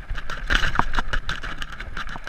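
Mountain bike rattling over a rough dirt descent: a rapid, irregular run of sharp knocks and clatters from the bike as the tyres hit bumps, over a steady rush of riding noise.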